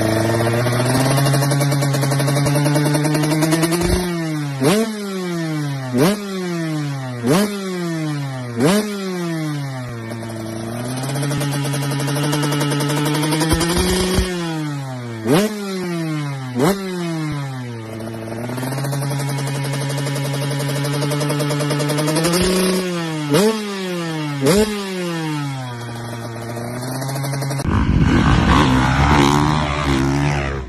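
Dirt bike engine idling while parked and being blipped repeatedly. Each rev climbs sharply and drops back to a steady idle, in a quick run of four blips and then two more groups. Near the end a different, louder and rougher engine sound takes over.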